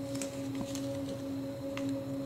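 A steady background hum of a few fixed tones, with a few faint clicks of a plastic pot being pressed down into a net cup.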